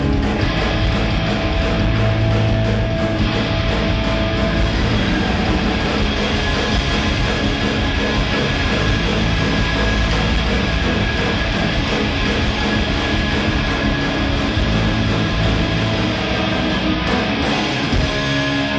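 Indie rock band playing live, loud and dense, with electric guitars over a steady rhythm.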